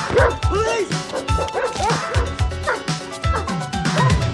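Dogs barking repeatedly over the film's score, which keeps a steady driving beat.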